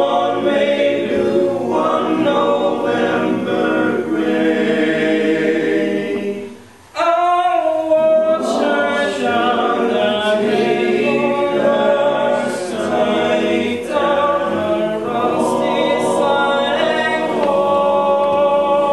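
Choir singing a cappella in a church, several voices in harmony, with a brief break about seven seconds in before the singing resumes.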